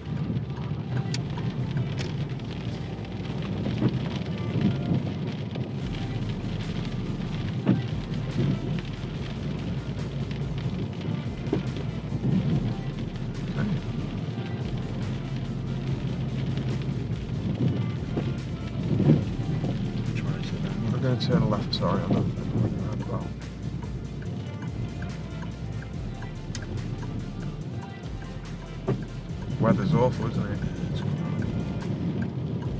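Background music with a deep bass line changing note every second or two, over the low, steady rumble of a car driving slowly on wet roads.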